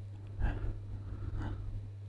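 Near-quiet pause in a voice-over recording: a steady low electrical hum, with two faint short noises about half a second and a second and a half in.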